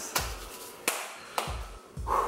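Three sharp taps, the first and last each followed by a brief dull thump.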